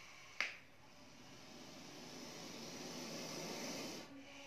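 A single sharp click shortly after the start, then a faint hissing noise that slowly grows louder and cuts off abruptly at the end.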